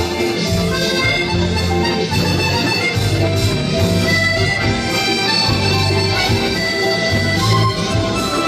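Maugein chromatic button accordion playing a lively musette tune, its held reedy notes over a pulsing bass line.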